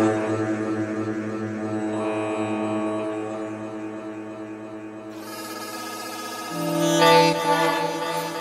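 Sustained, drone-like synthesizer tones from Alchemy's granular sampler: a sampled spoken word frozen into held, chant-like notes and morphed toward a resynthesized version, from grainy sound to synth overtones. The tone shifts about 2 s and 5 s in, and a louder, brighter chord comes in near the end.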